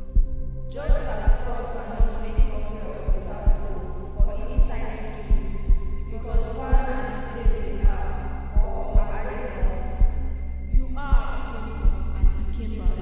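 Film soundtrack of a slow, regular heartbeat-like thump over a steady low hum, with sustained, shifting tones rising in above it about a second in.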